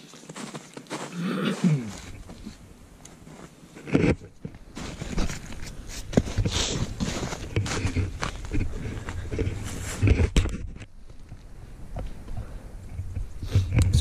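A throat clear near the start, then close rustling, knocking and bumping of a canvas jacket and the camera as the camera is picked up and moved about.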